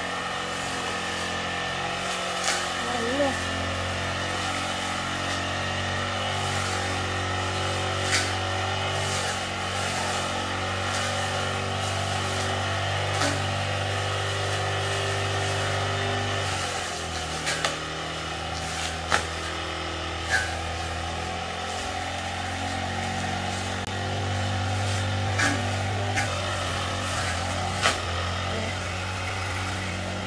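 Petrol brush cutter running steadily while cutting long grass. Its engine note drops for several seconds past the middle, then picks up again. Occasional sharp ticks sound over it.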